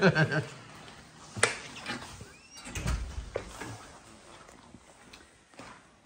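Handling noise of a heavy electric unicycle being carried and set down on a concrete floor: a sharp click about a second and a half in, then a low thump and another click about three seconds in.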